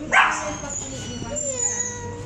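A Pomeranian gives one sharp bark just after the start, then a fainter high whine.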